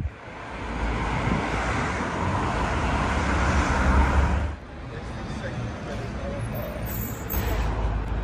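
Road traffic passing: the noise of a vehicle builds over a few seconds, then drops away sharply about halfway through. Lower, steady traffic noise follows, with another swell near the end.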